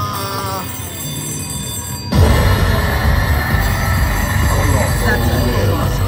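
Video slot machine playing its game sounds: a short chiming jingle, then about two seconds in loud big-win celebration music with heavy bass starts suddenly and runs on, marking a large bonus payout.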